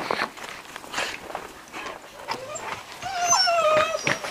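A puppy whimpering: a few short squeaks, then a long, wavering whine that falls slightly in pitch near the end.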